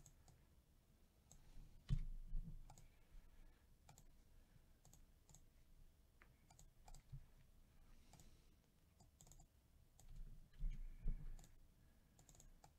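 Faint computer mouse and keyboard clicks, scattered and irregular, with a few soft low thumps about two seconds in and again near the end.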